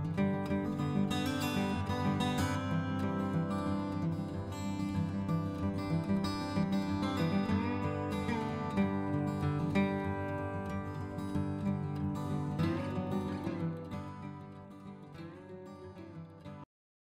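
Background music led by acoustic guitar, fading out over the last couple of seconds.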